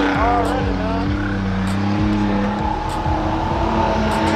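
Car engines running steadily at a street car meet, with a brief bit of talk from a bystander near the start.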